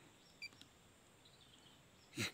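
Near silence, with one faint short blip about half a second in: a key press on a Gowin total station's keypad confirming a record.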